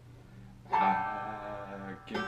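Banjo strummed: after a soft start, a chord rings out loudly about two-thirds of a second in and slowly fades.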